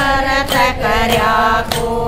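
Women singing a Haryanvi devotional bhajan, with hand claps keeping a steady beat about every half second.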